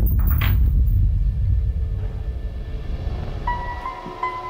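Dramatic film score: a sudden low rumbling hit that fades over a couple of seconds, with a few sharp metallic clicks in the first half second as the iron cell gate's lock is worked. A held high note enters near the end.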